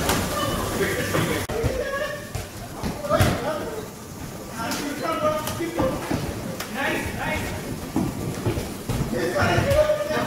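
Men calling out and shouting to each other during a game of human table football, with a few sharp thuds among the voices.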